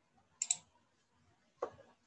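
Computer mouse clicks: a quick pair of sharp clicks about half a second in, and another click near the end.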